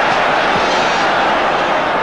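A large stadium crowd making a steady noise.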